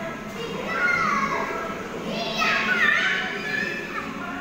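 A toddler's excited high-pitched squeals, twice: the first falls in pitch, the second comes about two seconds in and is the louder.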